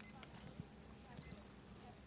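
Faint, short high-pitched electronic beep a little over a second in, with a fainter one at the very start, from the digital timer used to time the speeches.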